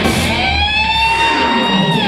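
Electric guitar played live in a rock band, holding one long note that bends slowly upward, with a lower note sliding down beneath it.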